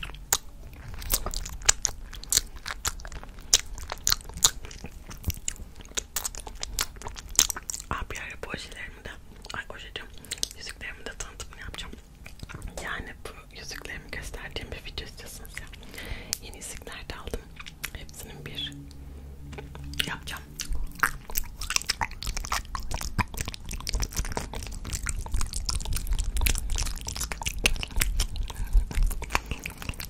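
Close-miked ASMR mouth sounds: a dense run of wet lip smacks, tongue clicks and licking. Near the end comes licking and sucking on a peppermint candy cane, which grows louder.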